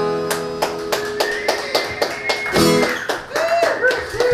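Acoustic guitar strummed in quick strokes with a long held harmonica note over it, the closing bars of a folk song. The playing stops about three seconds in, and a few short pitched sounds follow.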